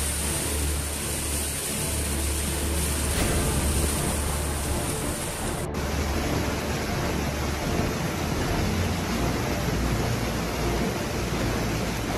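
Steady, dense storm noise of heavy rain and wind. About six seconds in, it cuts to the rushing of floodwater pouring along a street.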